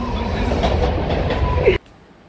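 Mumbai suburban local train heard from inside the carriage while running: a steady low rumble of wheels and carriage noise. It cuts off abruptly near the end.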